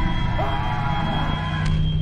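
Dark electronic film score: a sustained low drone under a steady high tone, with a short gliding note early on and a quick sweeping effect near the end.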